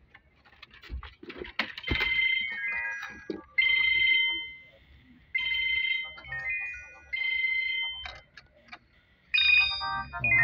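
A mobile phone ringtone: a short, high-pitched electronic melody that starts about two seconds in and repeats several times with short pauses. A few light clicks and knocks of handled dashboard parts come before it.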